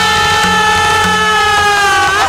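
A loud, long wail of mock grief from a male actor, held on one steady note. Short low musical notes pulse quietly underneath.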